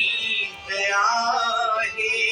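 A singer holding long, wavering notes of a devotional song in praise of the Bhagavad Gita, with musical accompaniment; the voice breaks off briefly about half a second in, then goes on.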